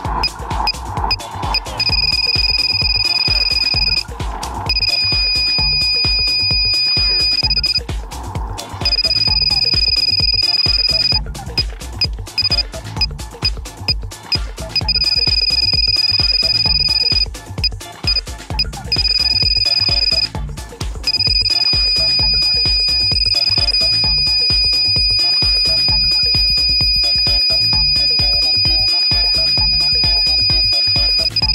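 ProLaser 4 laser speed gun's high aiming tone, breaking off several times into stretches of quick beeps, then held steady for the last third as the gun reads the target.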